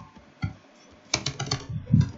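Computer keyboard typing: a single keystroke about half a second in, then a quick run of keystrokes in the second half.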